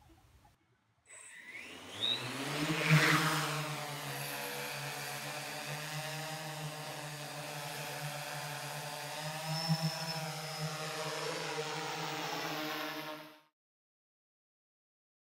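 Heavy-lift multirotor drone carrying a 6 kg spotlight: its motors and propellers spin up with a rising whine, loudest about three seconds in, then settle into a steady hovering hum. The sound cuts off suddenly near the end.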